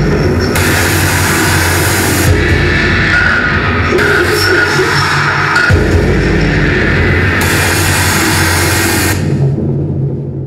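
Loud live electronic noise music played on tabletop electronics: a heavy low pulse under a dense wall of harsh noise, the upper noise layer cutting in and out every second or two. Near the end the high end drops away and the sound starts to fade.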